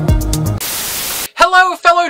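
Electronic dance music with a steady beat cuts off about half a second in and gives way to a burst of static hiss lasting under a second. The hiss stops suddenly and a man starts speaking.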